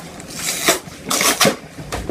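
Plastic bag of Popsicle ice pops crinkling and rustling in the hands as it is gripped and pulled at to open it, in a few uneven crackly rustles.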